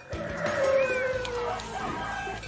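An animal call, one long note falling slightly in pitch, laid over the start of the closing music.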